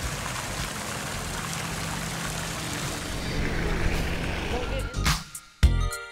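Fountain water spraying and splashing into its basin, a steady even rush. About five seconds in, background music with a strong beat starts.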